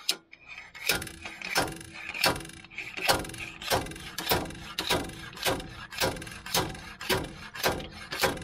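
Homemade steel slide-hammer bearing puller being worked by hand: the sliding weight slams against its stop in a steady run of about a dozen metal-on-metal clanks, a little faster than one a second, each ringing briefly. The blows are driving a stuck rear axle bearing out of the axle housing.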